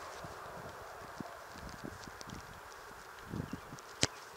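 Faint scattered soft thuds and taps on a grass pitch over a steady background hiss, the loudest thud a little past three seconds in: players' footsteps and a soccer ball being moved about.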